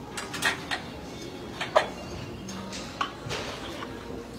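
Metal weight plates clinking and clanking as they are handled and set down: a handful of sharp, ringing knocks, the loudest a little under two seconds in.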